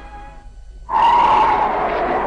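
Soundtrack music, faint at first. About a second in, a sudden loud rush of stormy wind comes in, mixed with the music, as a cartoon sound effect for a sandstorm.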